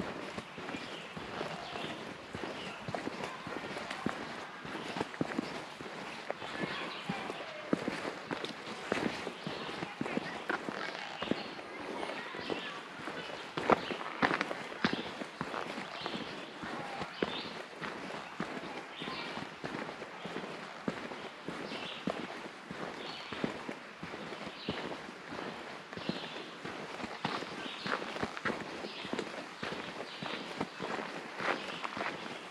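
A hiker's footsteps on a forest trail: an irregular crunching and crackling of steps, with one louder crunch about fourteen seconds in.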